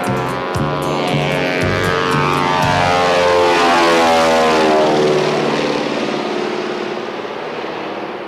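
Twin radial-engine Beechcraft 18 floatplane flying low overhead. The engine and propeller drone swells to its loudest about four seconds in, drops in pitch as the plane passes, then fades away.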